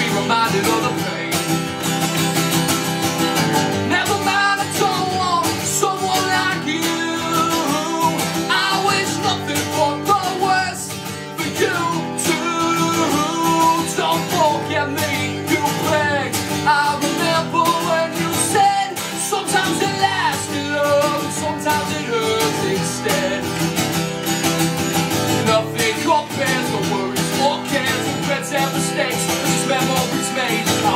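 A man singing over a strummed acoustic guitar.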